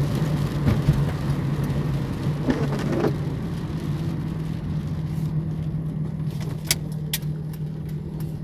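A car's engine and road noise heard from inside the cabin: a steady low hum, with a few sharp clicks in the last few seconds.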